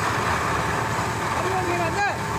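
Fire engine's motor and pump running steadily while a fire hose throws a pressurised water jet, with men's voices faint in the background near the end.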